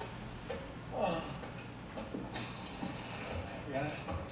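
A girl grunting with effort as she climbs, with light scuffs and knocks of the climb around her.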